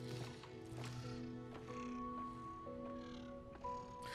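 Faint film score of soft held notes and chords that shift a few times, with a few brief, faint higher sounds over them.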